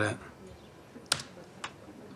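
Two clicks on a laptop: a sharp one about a second in and a fainter one half a second later.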